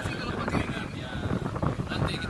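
Men laughing in short bursts, with wind rumbling on the microphone.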